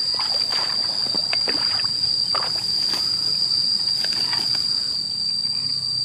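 An insect's continuous high-pitched drone held on one steady pitch, with scattered light rustles in the first half.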